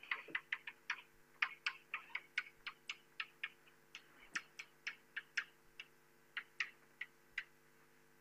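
Chalk tapping and scraping on a blackboard as block capital letters are written: a quick, irregular run of sharp taps, a few per second, that stops near the end.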